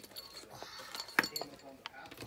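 Small packaged craft supplies being handled: light clinks and plastic rustling, with one sharp click about a second in.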